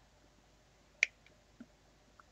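Hobby sprue cutters snipping a plastic miniature part off its sprue: one sharp click about a second in, then a couple of fainter plastic clicks.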